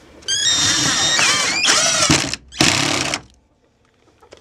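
Electric drill boring into solid oak beam. Its motor whine rises as it spins up, then sags and wavers as the bit labours in the hard wood. It stops about two seconds in, then runs again for under a second.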